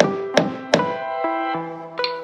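Metal body hammer striking the bottom edge of a van's steel door skin: three sharp knocks about a third of a second apart in the first second, then the blows stop. Background music with sustained notes plays throughout.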